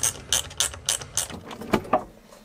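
Rapid, regular mechanical clicking, about three clicks a second, from a small hand-worked mechanism, then one louder knock near the end.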